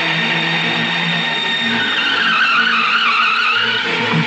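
A film soundtrack: a steady low drone, joined from about halfway through by a high screeching sound that wavers up and down.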